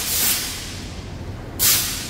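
A loud hiss of rushing air or spray that fades away over the first second, then a second short hiss near the end.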